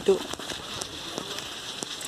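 Faint crackling and scattered clicks of someone moving and sitting down on dry grass, with the camera being handled.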